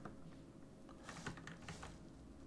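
Faint clicks and taps from computer input at a desk: one click at the start, then a quick cluster of several clicks about halfway through, over a faint steady hum.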